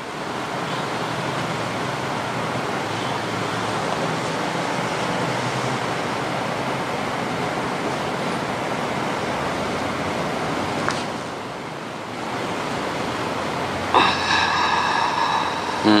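Steady rushing noise that breaks off briefly about eleven seconds in, then resumes, with a person's short murmured 'mm' near the end.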